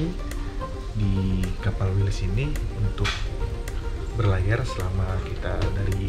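A man speaking over background music.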